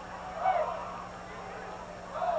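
Distant voices in a stadium, faint and echoing, over a steady low hum.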